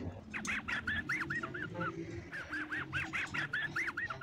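Cartoon laugh sound effect: Mutley the dog's snickering laugh, in two runs of short, squeaky yelps that rise and fall in pitch.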